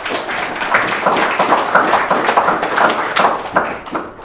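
Audience applauding, many hands clapping densely and dying away near the end.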